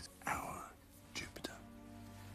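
A man's breathy whisper close up, with a few soft clicks about a second and a half in, over a quiet held music drone.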